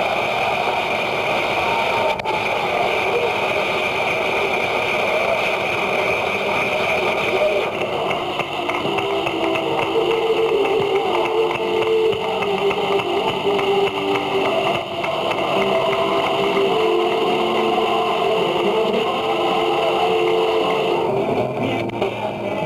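Old, noisy archival recording of indistinct voices with a steady high hum, then from about eight seconds in a simple melody line over it.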